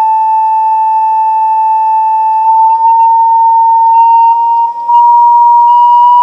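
Two Chladni plates driven by audio exciters sounding a swept sine tone just under 1 kHz, rising slowly in pitch. The level dips briefly near the end, then comes back a little louder as the sweep passes a plate resonance.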